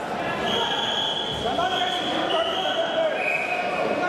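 Wrestling referees' whistles blown in a large sports hall. A long steady blast starts about half a second in and is followed by two more at slightly lower pitches, over background voices.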